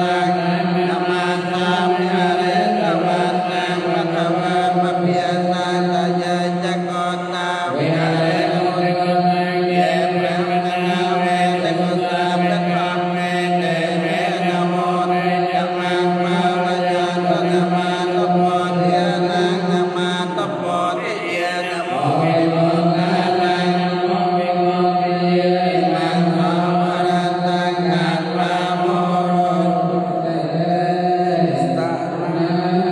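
Buddhist monks chanting, the leading voice amplified through a handheld microphone. The chant runs on long, steady held pitches, with a brief break about eight seconds in and another near twenty-two seconds.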